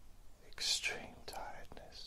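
A man whispering a short phrase, starting about half a second in.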